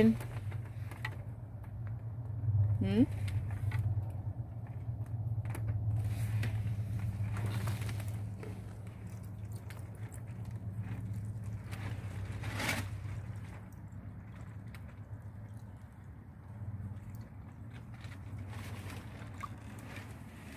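A steady low hum, with scattered light knocks of a clear plastic water dish being handled and set down in a wire rabbit cage.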